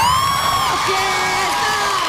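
A studio crowd cheering and whooping just as the dance music stops: one high whoop rising and falling at the start, then several long shouted calls.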